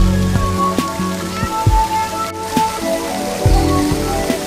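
Background music with a steady beat, over an even rushing hiss of water running down a fountain's glass panels.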